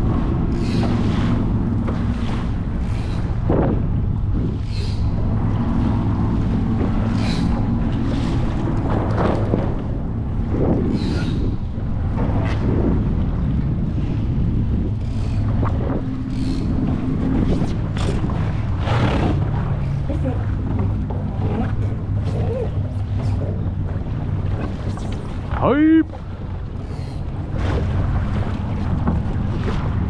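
Wind rumbling on the camera microphone while a Laser dinghy sails, with water slapping and splashing against the hull every second or two. Near the end a short pitched cry rises and falls, then the overall sound drops suddenly.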